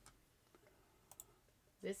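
Near silence with a few faint, short clicks, then a man's voice begins near the end.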